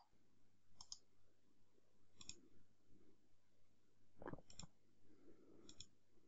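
Faint computer mouse clicks, about five, spaced a second or two apart, with a quick pair about four seconds in; otherwise near silence.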